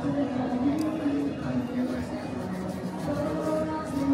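Indistinct voices of several people talking in a busy indoor room.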